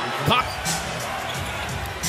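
Arena crowd noise during play, with a basketball bouncing on the hardwood court.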